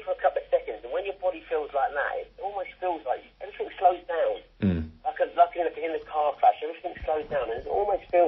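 Speech only: a man talking steadily without a break.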